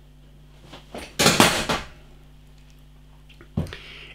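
A freshly opened glass bottle of bottle-conditioned ale fizzing as its foam rises up the neck: a short burst of hiss about a second in, then a faint click near the end.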